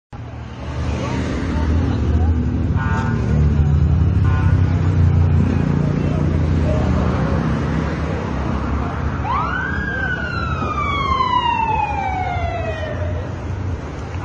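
Emergency vehicle siren over a steady street and engine rumble: about nine seconds in it sweeps quickly up and then falls slowly over about four seconds. Two short tones sound earlier, about three and four seconds in.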